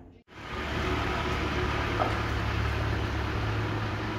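Steady city street noise with a low traffic rumble, starting just after a brief dropout about a quarter second in.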